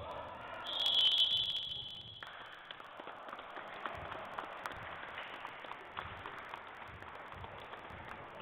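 Basketball scoreboard buzzer sounding once, a loud steady high tone lasting about a second and a half, as the game clock runs out to end the period. After it, scattered taps and squeaks on the court and a murmur of voices in the hall.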